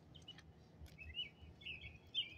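A bird chirping faintly in a few short, wavering calls, with a couple of light clicks over a low steady hum.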